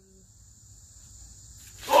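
Quiet outdoor air with a faint, steady high-pitched insect drone. Near the end, water from a jug splashes down over a seated man and he cries out.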